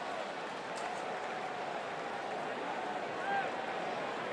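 Steady crowd murmur at a ballpark, with a voice in the crowd calling out briefly about three seconds in.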